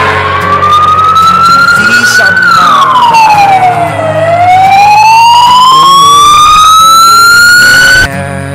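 Siren wailing: a slow rising pitch, a fall about two and a half seconds in, then a long rise again, cutting off suddenly at the end.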